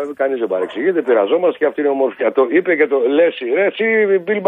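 Speech only: a caller talking continuously over a telephone line, the voice narrow and thin with its top cut off.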